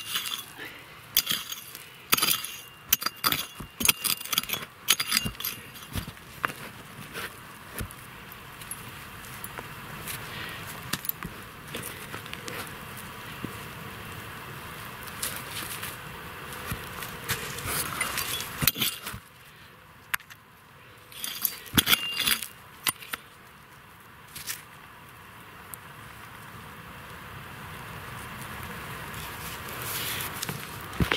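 A small hand hoe-and-fork digging tool chopping and scraping into stony, sandy soil, its metal blade clinking on pebbles and rock fragments. The strikes come in bursts of quick clicks, busiest in the first few seconds and again past the middle, with a quieter stretch between.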